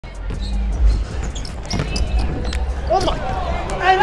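A basketball being dribbled on a hardwood court, with a few sharp bounces in the first half, followed by a voice near the end.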